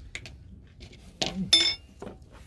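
Light clicks of handling on a wooden table, then a thump and a short, ringing clink of hard objects about one and a half seconds in; the clink is the loudest thing.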